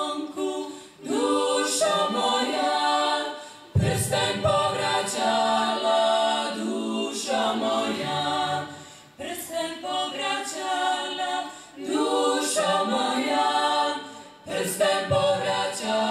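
A small vocal ensemble singing a cappella in close harmony, in phrases broken by short breaths.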